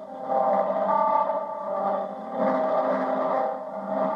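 Live country band music: steady held notes and chords from electric guitar and band, changing to new pitches about halfway through.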